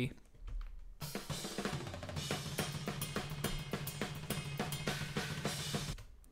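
Overhead-mic tracks of a sampled Superior Drummer Progressive Foundry drum kit playing back a fast metal drum part, coming in about a second in with rapid snare and cymbal hits. The overheads carry far more snare than usual because the snare was turned up in all four overhead mics.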